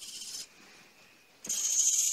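Hobby servo motors of a desktop robotic arm driving it to commanded angles: two short bursts of high-pitched gear whine, the first about half a second long, the second louder and nearly a second long about a second and a half in, with a faint steady tone between them.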